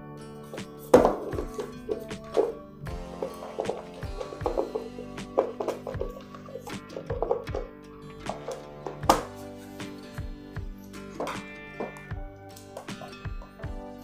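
Background music, with clicks and knocks of a plastic Legrand P17 three-phase socket housing being handled and its cover closed; the two sharpest knocks come about a second in and about nine seconds in.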